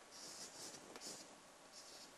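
Chalk writing on a blackboard: faint scratching strokes, a longer one lasting about a second at the start and a shorter one near the end.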